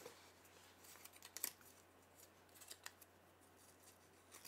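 Near silence with a few faint, light clicks and rustles of small things being handled by hand, the clearest pair about a second and a half in.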